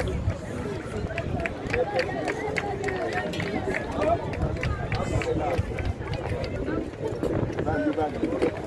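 Several voices talking and calling over one another, with scattered sharp clicks and a low steady rumble underneath.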